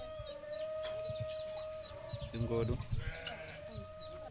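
A farm animal's short, wavering bleat about halfway through, with small birds chirping throughout and a steady tone underneath.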